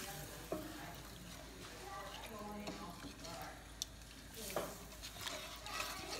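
Wooden spoon stirring a wet mixture of rice, diced tomatoes and water in a stainless steel pot, with a couple of light clicks of the spoon against the pot over a faint sizzle from the heating pot.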